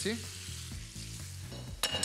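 Pan of peppers and sausage frying on a gas burner, a steady sizzle as freshly added grated tomato hits the hot oil. A single sharp clack near the end.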